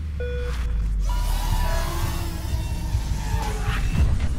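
Music and sound effects of an animated logo intro: a deep bass drone under a short synth tone, then a swelling whoosh with gliding tones that sweeps upward near the end.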